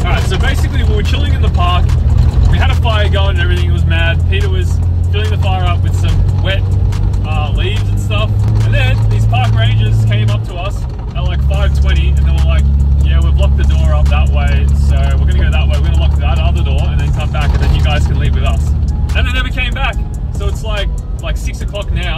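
Nissan GQ Patrol's engine droning steadily, heard from inside the cabin while driving. About ten seconds in the drone briefly dips, then settles at a lower pitch, like a gear change. Its carburettor is in need of a rebuild.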